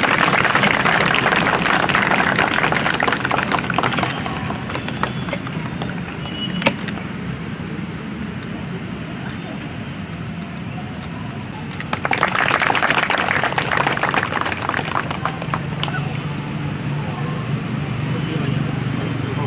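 Two rounds of hand-clapping from a small standing crowd: the first runs for about four seconds at the start, the second begins about twelve seconds in and lasts about three seconds. A single sharp knock comes about seven seconds in, and voices murmur underneath.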